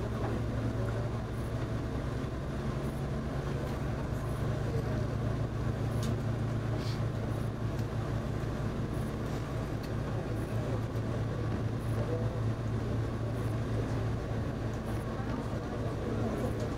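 Diesel railcar running steadily along the track, heard from the driver's cab: a constant low engine hum under the rolling noise of the wheels on the rails, with a couple of faint clicks about six and seven seconds in.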